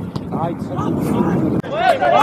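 Players' voices calling out across a football pitch over a steady rumble of wind on the microphone. About one and a half seconds in the sound cuts abruptly and a louder call starts.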